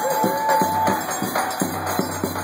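Live forró pé de serra band: button-and-piano accordion playing, holding a long note in the first second, over a regular zabumba drum beat and light metallic percussion.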